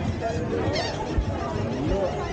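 A bird calling in short, wavering honking cries over a background of people talking.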